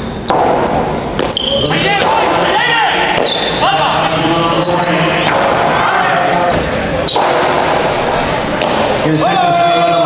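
Jai alai pelota striking the fronton wall and cestas: a handful of sharp cracks spaced a second or more apart, over the continuous voices of a crowd.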